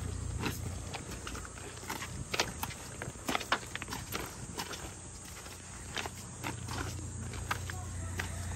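Footsteps crunching over a beach of loose rounded pebbles and stones, the stones clacking against each other in irregular sharp clicks at walking pace.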